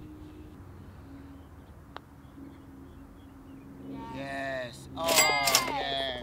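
A low steady hum under quiet background, a single faint sharp click about two seconds in, then people's voices calling out loudly near the end.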